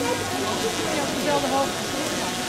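Steady outdoor street ambience, an even noisy hiss with indistinct talk from people nearby in the background.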